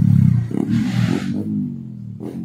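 Honda CRF150 dirt bike's single-cylinder four-stroke engine revving through a corner, its note rising and falling, loud at first and fading away over the second half.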